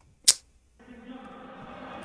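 A single sharp click, then the faint murmur of a gym crowd from the basketball video as it starts playing again.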